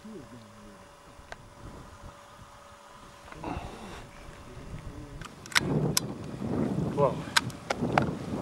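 A single shot from a scoped hunting rifle about five and a half seconds in, fired to cull a hind, followed by wind rushing over the microphone and a few sharp clicks.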